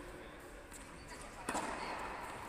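Low background of voices and movement in an indoor tennis hall, broken by a single sharp knock about one and a half seconds in, after which the sound grows louder.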